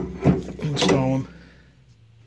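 A man's voice speaking for about the first second, then a faint steady low hum.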